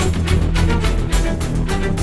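Tense drama soundtrack music: a sustained low bass under fast, even percussive beats, about four a second.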